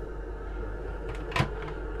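Steady hum of the cabin's air conditioning running, with a single sharp click about one and a half seconds in.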